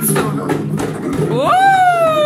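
A two-headed barrel hand drum played with hand strokes. About a second and a half in, a person lets out a long "whoo" that rises sharply and then slowly falls in pitch.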